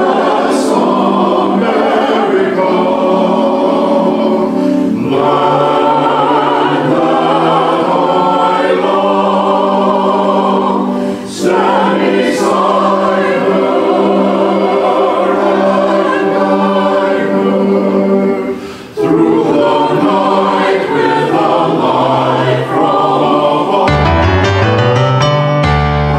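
Mixed church choir singing sustained, slow-moving lines, with brief breaks for breath about eleven and nineteen seconds in.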